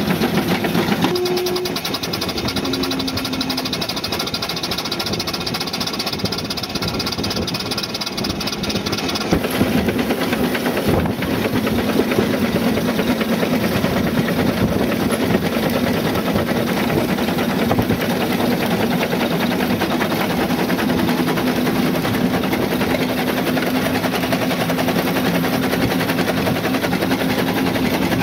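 A 1911 Stanley Steamer under way: its two-cylinder steam engine runs in a fast, even patter of beats with steam hiss and road noise. A steady low hum joins about ten seconds in, and the sound grows slightly louder.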